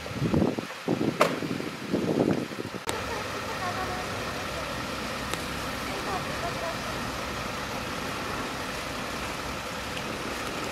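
Muffled, indistinct voices for about the first three seconds, with two sharp clicks, then a steady low hum of parked vehicle engines idling.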